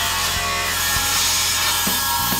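Table saw running and cutting through a white board, a loud, steady cutting noise.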